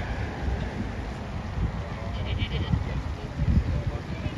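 Outdoor ambience between songs: wind rumbling on the microphone under faint crowd voices, with a brief high-pitched cry from a young child about two seconds in.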